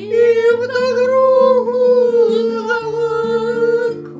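A woman singing one long held note, sliding up into it at the start, accompanied by an acoustic guitar playing changing bass notes underneath. The voice breaks off just before the end.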